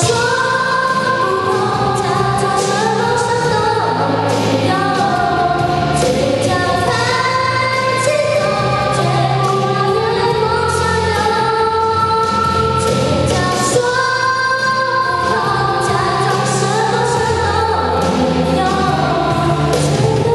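A young girl singing a song into a handheld microphone over a karaoke backing track, the melody held without a break at a steady loudness.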